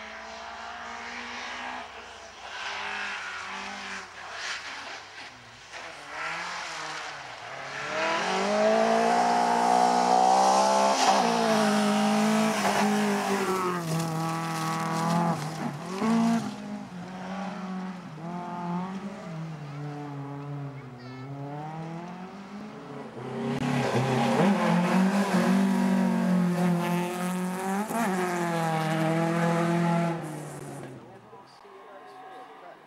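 Rally car engines revving hard and rising and falling through the gears as cars pass on a gravel stage. The loudest passes come about eight to sixteen seconds in and again from about twenty-four seconds.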